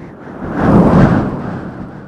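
A deep rumbling sound effect that swells to its loudest about a second in and then fades away.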